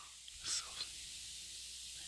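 Faint steady hiss with one soft, breathy mouth sound from a man about half a second in, like a whispered syllable or an intake of breath.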